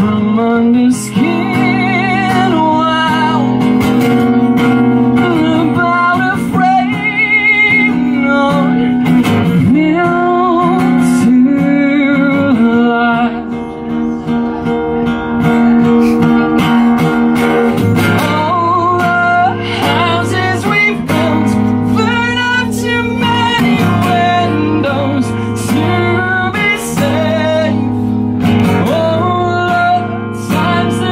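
A man singing with vibrato while strumming an acoustic guitar, played live through a PA. The voice and guitar continue together, with a brief drop in level about halfway through.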